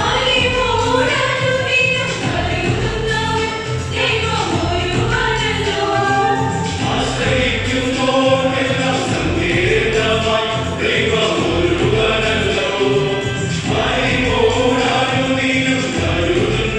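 Mixed choir of men and women singing a Malayalam Christian convention song in parts, over a steady electronic keyboard accompaniment.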